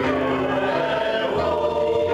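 Small gospel choir singing in held notes, accompanied by an electric keyboard and electric guitar with a steady bass line.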